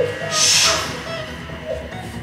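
Workout background music playing steadily, with a short hiss about half a second in.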